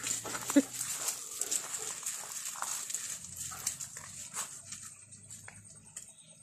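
A German Shepherd dog close to the microphone, with a short whine about half a second in. Then comes a run of scuffing and small clicks as it moves about on gravel, thinning out near the end.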